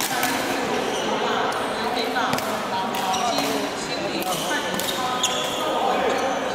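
Busy badminton hall: a few sharp knocks of rackets striking shuttlecocks on the courts, over background voices and chatter echoing in the large room.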